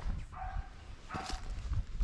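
A dog barking twice, faintly, about half a second and a little over a second in.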